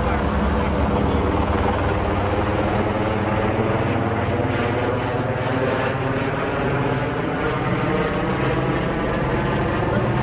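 Helicopter circling overhead, a steady drone made of many evenly spaced tones that waver slightly in pitch.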